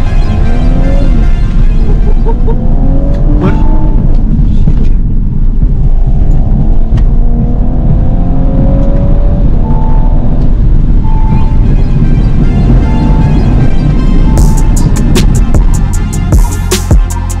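Audi S5's turbocharged V6 accelerating through the gears, heard from inside the cabin, its pitch rising repeatedly under a music track. Beat-driven music takes over near the end.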